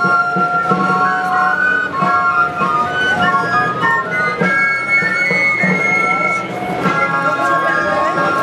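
A small band of clarinets playing a folk tune together while marching, several instruments moving in parallel harmony.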